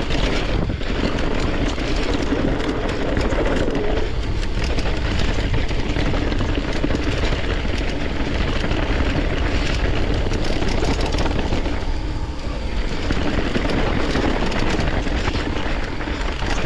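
Mountain bike being ridden over a rough trail: continuous wind rumble on the microphone over the rolling and rattling of the bike, with many small clicks throughout and a brief dip about twelve seconds in.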